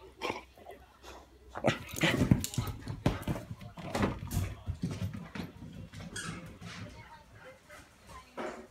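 A pet dog making excited rough-play noises, barks and whines in a cluster of loud bursts in the first half, dying down towards the end.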